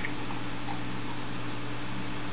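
Steady low hum with a faint hiss under it, no voices: the background noise of the call's audio.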